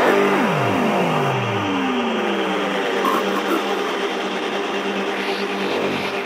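Psytrance breakdown without a kick drum: several synth tones sweep downward in pitch over a steady held drone.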